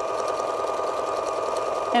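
Domestic sewing machine running steadily, stitching a decorative entredeux stitch with a wing needle.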